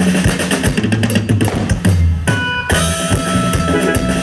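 Live band music: a drum kit keeps a steady beat over bass, with a short break just past halfway where the drums drop out and a few held notes sound before the beat comes back in.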